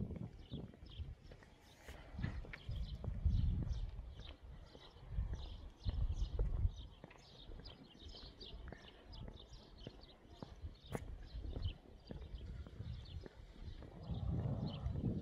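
Outdoor ambience: uneven gusts of wind rumbling on the microphone, with many quick high chirps, a few each second, throughout.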